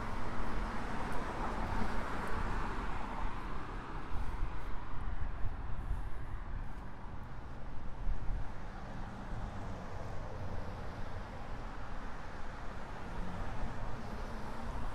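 Street traffic noise: a steady rumble of passing cars, louder in the first few seconds and then easing off.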